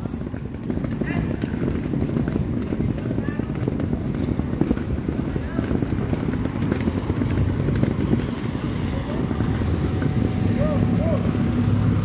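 Street traffic: a steady low rumble of engines and tyres from passing cars, vans, pickup trucks and motor scooters, with faint voices now and then.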